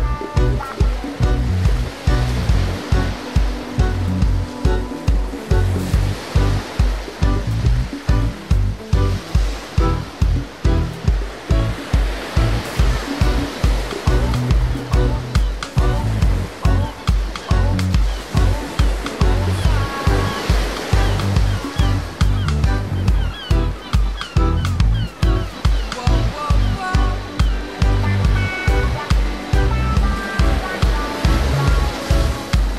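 Background music with a steady bass beat of about two pulses a second.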